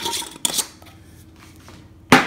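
A single brief clatter about half a second in as a glass jar of turmeric-garlic-ginger paste is handled, followed by faint room noise.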